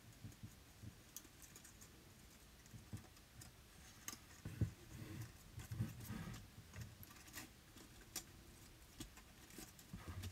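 Faint rustling and light scattered clicks of die-cut foiled paper flower petals being pinched up and pressed down by fingers onto a card.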